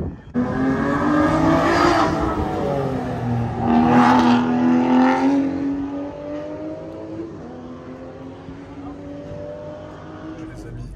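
Aston Martin sports car engine accelerating hard on the track, its note rising in pitch and loudest about four seconds in, then settling to a quieter, lower, steady drone.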